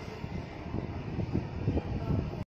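Husky puppy eating soft food from a steel bowl: a quick, irregular run of low chewing and mouthing sounds that grows a little louder over the two seconds.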